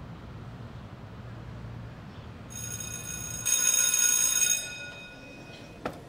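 An electric school bell rings with a steady, high, many-toned ring. It starts about two and a half seconds in, is loudest for about a second, then fades away over a low background hum. A short knock comes just before the end.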